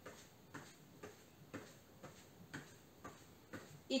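Soft, faint footfalls of someone marching in place in socks on an exercise mat, about two steps a second.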